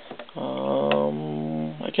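A man's drawn-out hesitation sound, a hummed "hmm" or "uhh" held on one steady low pitch for about a second and a half, with a single light click of the card stack partway through.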